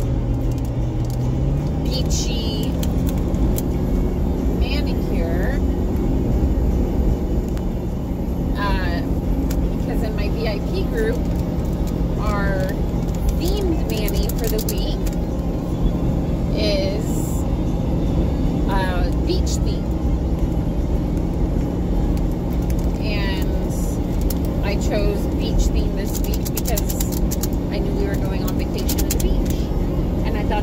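Road noise and engine hum inside a moving vehicle's cabin, the hum rising in pitch about two seconds in, with scattered clicks and rattles from a bumpy road.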